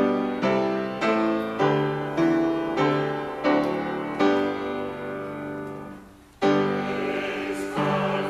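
Piano playing slow struck chords, about two a second, under a choir singing a choral anthem; the music thins and fades about six seconds in, then comes back strongly.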